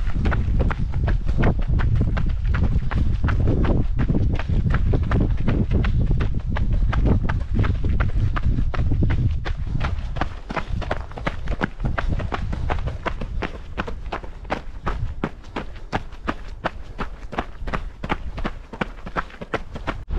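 Running footsteps on a gravel dirt track: an even rhythm of shoe strikes, about three a second, at a steady running pace. A low rumble lies under the steps through the first half and fades about halfway.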